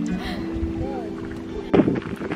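Background music of soft held chords that change about once a second, with a faint low rumble under it. Near the end a woman's voice begins talking.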